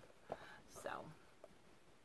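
Near silence: room tone, with a soft, breathy spoken 'so' and a couple of faint clicks.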